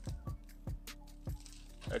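A seasoning shaker shaken over meat, giving a handful of sharp, irregular taps, over background music.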